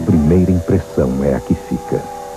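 A voice says a short phrase over a steady held music chord with a low hum beneath it; the voice stops just before the end and the chord carries on alone.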